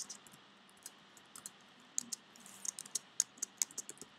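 Typing on a computer keyboard: a few scattered key clicks at first, then a quick run of keystrokes in the second half.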